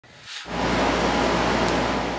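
Steady rushing air noise with a faint low hum from laboratory ventilation, fading in about half a second in.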